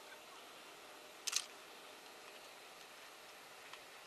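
A brief sharp double click about a second in, over a faint steady outdoor hiss; the distant train is not heard.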